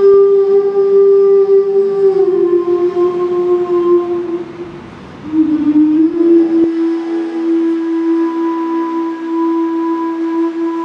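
Improvised droning music: one long, sustained tone with overtones. It steps down slightly in pitch about two seconds in, fades and dips around five seconds, then settles again on a steady note.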